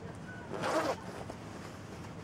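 A single short rasping noise, about half a second in and lasting under half a second, over a faint steady background hiss.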